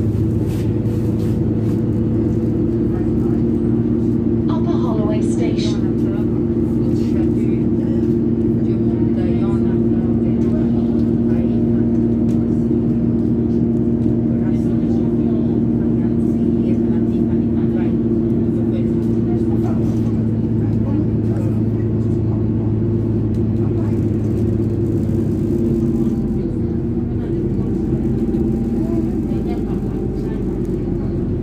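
Cabin sound of an Alexander Dennis Enviro400 double-decker bus under way: the diesel engine drones steadily with road rumble, and drops in pitch and level about 26 seconds in as the bus eases off.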